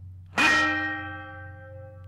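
A single metallic clang of a shovel striking, about half a second in, ringing on in several tones and fading away over about a second and a half.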